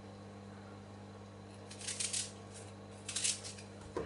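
Two short, crisp cuts of a kitchen knife through a raw onion, a little over a second apart, over a faint steady hum.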